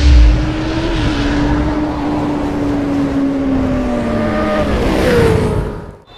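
Motorcycle engine sound effect in an intro animation: a deep hit at the start, then a steady engine note that slowly drops in pitch and fades out near the end.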